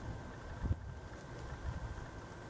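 Low wind rumble on the microphone, with soft low thuds, the clearest just under a second in, as a potato plant is pulled up by its roots out of a plastic tote of soil.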